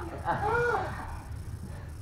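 A performer's wordless, high-pitched vocal call that rises and then falls in pitch over about half a second.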